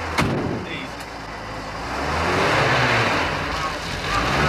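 A motor vehicle's engine running and revving, with a sharp knock shortly after the start and a second smaller one about a second in; the engine note dips, then climbs again in the second half.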